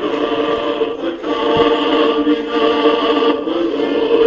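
Choral music: voices singing long held chords.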